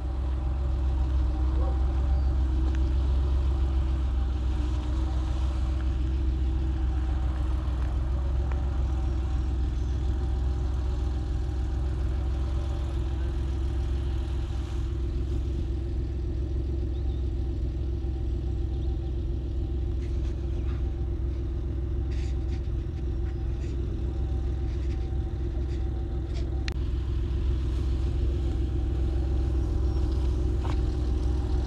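An engine running at idle: a steady low rumble with a constant hum, and a few faint ticks in the second half.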